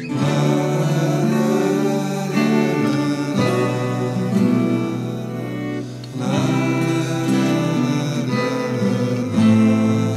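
Music: an acoustic guitar playing, with new chords or phrases struck every few seconds.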